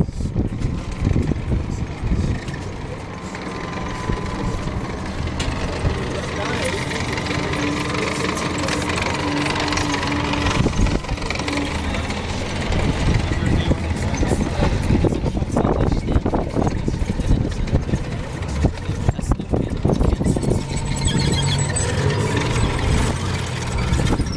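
A 17-tonne armoured personnel carrier's engine running with a steady low hum, growing a little louder after a few seconds as the vehicle drives, over a dense rapid clatter from its tracks.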